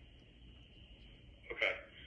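A faint steady hiss, then one brief, short vocal sound about one and a half seconds in.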